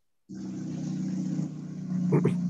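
A steady low mechanical hum with a hiss over it, like an engine running. It starts abruptly a moment in, after a brief silence.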